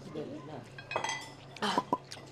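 Chopsticks clinking against a plate a few times about a second in, with brief ringing from the plate; a short burst of voice follows near the end.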